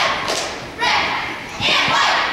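Cheerleading squad shouting a cheer in unison, a loud word starting about every 0.8 s, each echoing in a large gym, with a few thuds.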